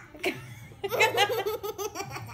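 Two-and-a-half-year-old girl laughing: a brief burst near the start, then a run of quick belly laughs from about a second in.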